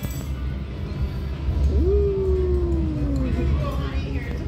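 A person's drawn-out wordless vocal sound: one long note, starting about halfway through, that rises quickly and then slowly falls in pitch for about a second and a half, over a steady low room rumble.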